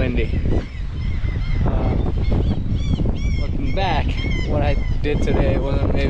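Strong wind buffeting the microphone throughout, with a bird calling over it in a run of short, repeated rise-and-fall calls, mostly in the middle.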